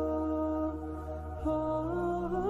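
Background music: slow, sustained drone-like tones with a wavering, ornamented melody line above them, the low notes shifting to a new pitch about one and a half seconds in.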